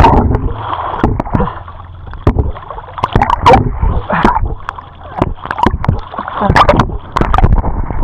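Seawater splashing and sloshing over a camera's microphone as it goes in and out of the water while swimming, with muffled gurgling when it is under and sharper splashes in irregular surges. Laughter comes in near the end.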